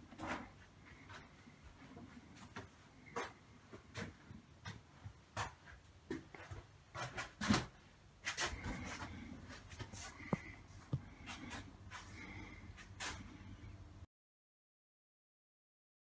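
Faint scattered clicks and knocks in a small room, one louder knock about seven and a half seconds in, with a low hum underneath in the second half. The sound cuts off to silence near the end.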